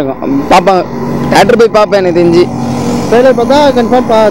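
A man talking over the steady noise of road traffic passing close by.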